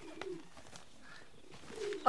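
A bird cooing faintly, with a short call at the start and another near the end.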